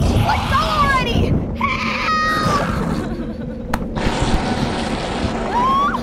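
Young women screaming in fright, several high cries that rise and fall, with one held shriek about two seconds in, over rushing noise and a steady low drone.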